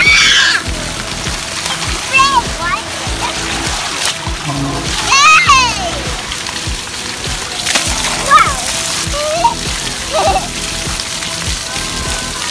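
Water pouring and splashing from splash-pad play features, with children's high-pitched shouts rising over it several times and music playing throughout.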